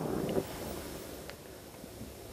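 Oxy-acetylene torch flame hissing steadily as it heats a work-hardened copper strip to anneal it, with one faint tick about a second in.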